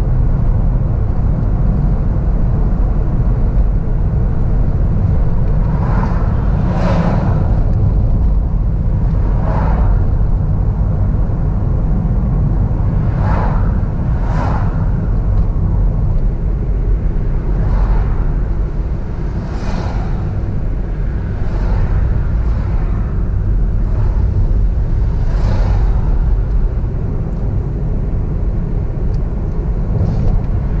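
Car driving along a road at steady speed: a continuous low rumble of engine, tyres and wind, with brief swells of higher noise every few seconds.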